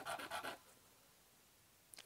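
A bone guitar nut rubbed back and forth on coarse sandpaper: a few faint sanding strokes in the first half second, then near silence.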